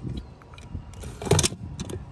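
Plastic key box hanging on a vehicle window, handled by hand: a few clicks, then a short loud rattle about a second and a quarter in, then more light clicks.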